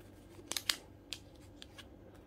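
Plastic photocard sleeve and clear binder pocket clicking and crinkling as a card is slid into the pocket: a few sharp, brief clicks, the loudest pair about half a second in and another just past one second.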